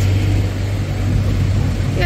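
Road traffic noise from cars driving past close by: a steady rumble of engines and tyres with a broad hiss.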